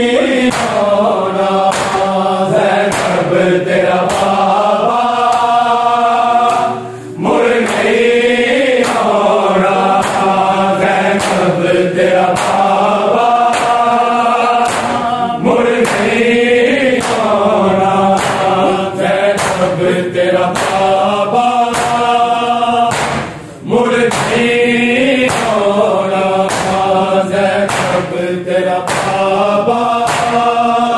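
A chorus of men chanting a noha, a Shia lament, in unison while beating their chests in matam, the hand-on-chest slaps landing in a steady beat of about two a second. The chanting breaks off briefly twice, about seven seconds in and again past twenty seconds, as the beating carries on.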